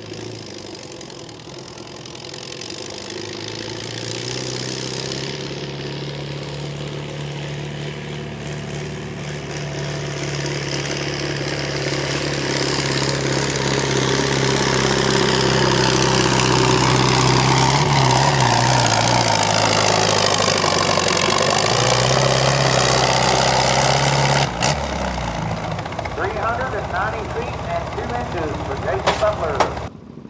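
Antique farm tractor engine working hard under load as it drags a weight-transfer sled in a tractor pull, growing steadily louder over about fifteen seconds. The note dips and recovers about two-thirds of the way through, then breaks off sharply, leaving quieter background sound.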